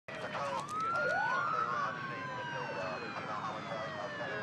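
Police sirens wailing: two overlapping wails rise in pitch in the first second and a half, then a long tone slowly falls.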